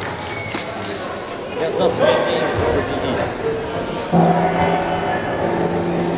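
Voices and bustle in a large sports hall, with a steady, evenly pitched held tone entering about four seconds in.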